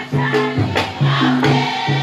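Maoulida chengué, the Mahoran devotional chant: a group of voices singing together over a steady beat of hand percussion, about two or three strikes a second.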